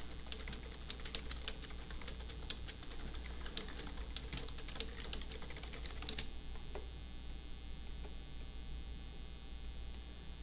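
Typing on a computer keyboard: a quick, uneven run of key clicks for about six seconds, then the typing stops.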